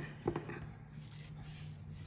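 A fine metal necklace chain being handled: faint rubbing with a few light clicks in the first half second.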